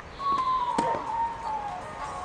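A long, high-pitched tone that falls slowly in pitch, with a single sharp knock of a tennis ball off a racket or the clay court about a second in.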